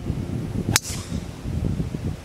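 A four wood striking a golf ball off a tee: one sharp crack about three quarters of a second in. Low wind noise on the microphone runs underneath.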